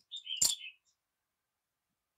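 Steel scissors snipping a strip of adhesive tape and being put down on a tiled floor: a short clatter lasting under a second, with one sharp clink at its loudest point.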